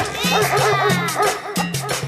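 A dog-barking sound effect, the sonidero "perrazo", a quick run of barks and yips laid over dance-band music with a steady repeating bass line.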